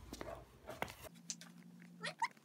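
A few faint clacks and knocks of a skateboard and shoes on concrete after a kickflip attempt. About a second in, the background changes abruptly to a faint steady hum.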